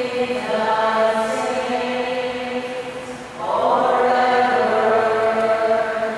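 Slow, chant-like liturgical singing made of long held notes; it steps up to a new, louder note about three and a half seconds in.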